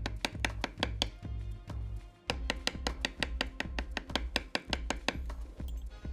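A steel leather stamping tool tapped rapidly with a mallet into veg-tan leather, about six sharp strikes a second, with a short pause about two seconds in and another near the end.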